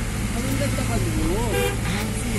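Steady low hum of a vehicle engine running, with a person's voice rising and falling over it.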